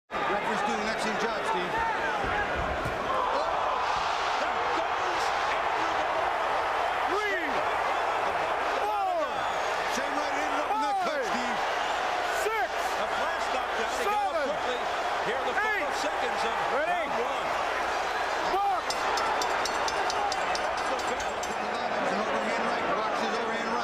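Arena crowd noise at a boxing match: a steady, dense din of many voices with no breaks.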